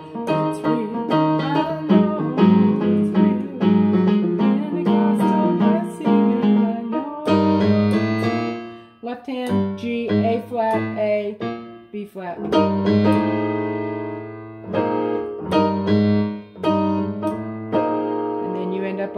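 Yamaha digital keyboard on a piano voice playing gospel chords: right-hand block chords over left-hand bass notes, moving through a slow progression with short breaks about nine and twelve seconds in.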